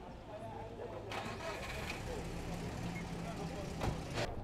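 A vehicle engine running with a steady low hum, with street noise that grows louder about a second in and voices in the background.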